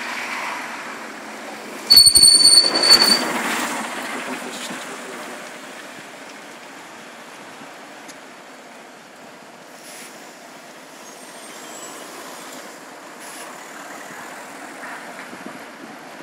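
City bus brakes giving a sharp, high-pitched squeal with a hiss of air for about a second, around two seconds in. After it, bus engine and traffic noise runs on, slowly fading.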